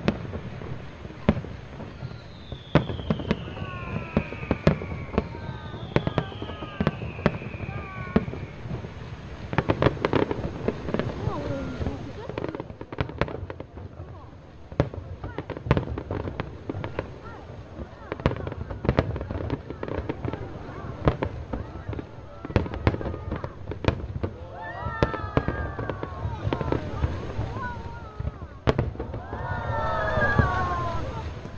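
Fireworks display: aerial shells and barge-fired effects bursting in a rapid, uneven string of bangs and crackles, with two falling whistles a few seconds in.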